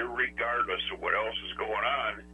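A person speaking through the room's microphone system, with a steady low hum underneath.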